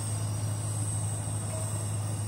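A steady low hum with a thin, steady high-pitched whine above it.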